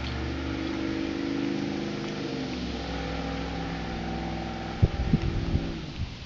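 A large vehicle's engine running past, its pitch sinking slowly as it fades out about five seconds in. A few low thumps follow near the end.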